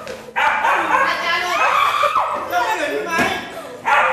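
A dog barking and yipping amid loud human voices.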